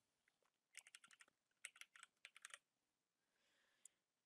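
Faint keystrokes on a computer keyboard, typed in three short quick runs with a last single tap near the end.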